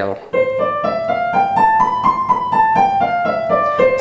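A C major scale played one note at a time in the right hand on an electronic keyboard with a piano sound. It climbs one octave at about four notes a second and steps back down to the starting C.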